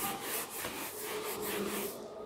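Whiteboard duster wiped rapidly back and forth across a whiteboard, erasing marker writing: a rubbing swish in quick strokes, about four a second.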